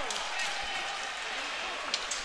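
Sports-hall ambience during a roller hockey game: a steady hum of distant voices echoing in the hall, with one sharp knock just before the end.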